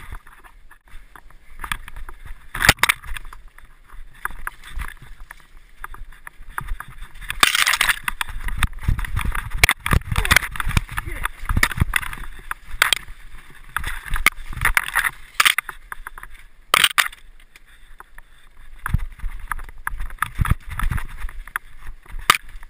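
Hardtail mountain bike clattering down a rough, rocky trail: frame, chain and components rattle, with frequent irregular sharp knocks as the wheels strike rocks and roots.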